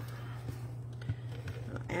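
Steady low hum with faint rustles and a couple of light taps as a cardstock panel is handled on a tabletop.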